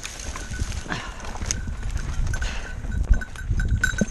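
Mountain bike being lifted out of dry scrub and set going again: rattles and knocks from the bike, rustling brush, and a low rumble as it gets under way, with a sharp knock about three seconds in.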